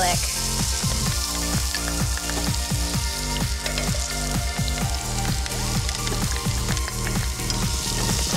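Chopped shallots and garlic frying in hot oil and sugar in a stainless steel pan: a steady sizzle.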